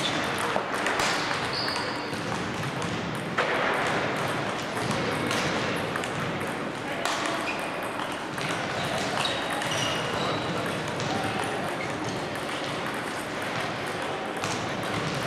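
Table tennis balls clicking off bats and tables in rallies on several tables at once, an irregular patter of short sharp pings, with voices in the background.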